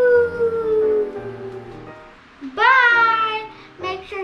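Background music with a child's voice holding two long wordless notes, each sliding down in pitch; the second, past the halfway mark, is the louder.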